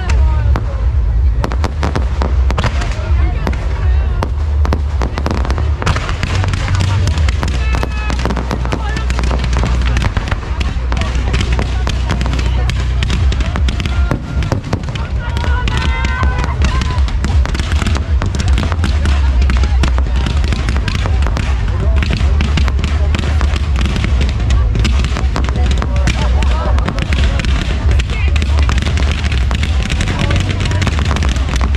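Fireworks display: fountains and aerial shells firing, a dense, rapid crackling and popping throughout over a heavy low rumble.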